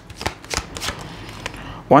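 A deck of tarot cards handled and shuffled by hand to draw a card: a quick run of sharp card snaps in the first second, then a softer rustle of cards.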